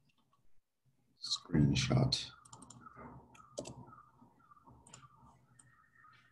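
A short unworded voice sound about a second in, followed by a run of light computer mouse clicks. A faint steady tone starts near the end.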